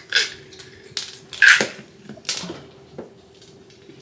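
Cats crunching dry cat treats: about five short, sharp crunches spaced irregularly, the loudest about a second and a half in, over a faint steady hum.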